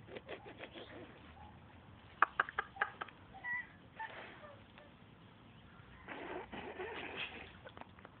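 Quiet, breathy laughter, with a quick run of sharp clicks and taps in between.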